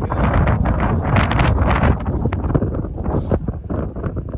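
Wind buffeting the microphone in loud, gusty rumbles.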